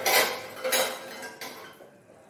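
Metal kitchen utensils and cookware clattering: three loud clatters in the first second and a half, the first the loudest, then quieter.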